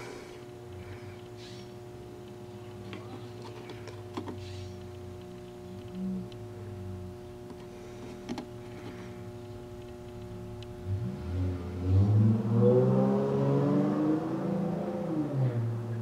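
Steady electrical hum with a couple of faint clicks as the controls of a CRT tester are set. In the last few seconds a louder pitched sound slides up and down over it.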